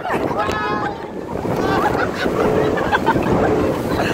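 Wind buffeting the phone's microphone and water rushing past as an inflatable banana boat is towed at speed over choppy sea, a steady loud rush with no break.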